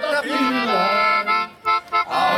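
Small button accordion playing held chords between sung lines, with a brief break about one and a half seconds in before the playing comes back.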